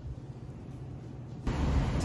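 Faint, steady low room hum, then suddenly, about one and a half seconds in, the louder steady rumble and hiss of a car driving, heard from inside the cabin.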